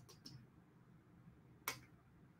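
Near silence with a few faint clicks in the first half second and one short, sharp click about three quarters of the way through.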